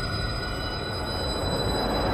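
A dense, noisy drone from the trailer's sound design, with thin high tones held over it, slowly growing louder.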